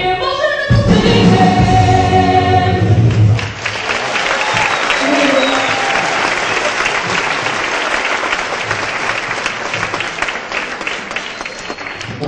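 A woman's voice singing the last line of a song over musical accompaniment, ending about three seconds in, followed by a theatre audience applauding steadily.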